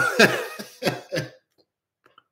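A man laughing: a handful of short bursts, each weaker than the last, that die away after about a second and a half.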